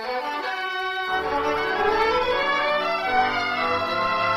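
Orchestral music bridge led by violins and strings, beginning right after the dialogue stops and swelling slightly as it goes: a scene-change cue in a 1940s radio drama.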